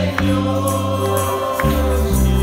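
Congregational gospel worship song: a woman's lead voice and the congregation singing long held notes, accompanied by violin, low bass notes and sharp hand-percussion strikes.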